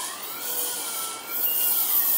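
Oertli Faros phacoemulsification machine's audible feedback tone, its pitch wavering slowly up and down with the aspiration vacuum while the handpiece emulsifies nucleus fragments. There is a steady hiss under it.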